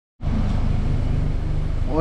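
Audi S3's turbocharged 2.0-litre four-cylinder idling steadily, heard at its quad exhaust tips.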